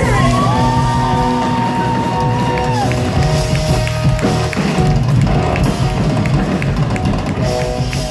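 Live rock band playing, with electric bass, electric guitar and drum kit. A long held note that bends up and back down runs through the first few seconds.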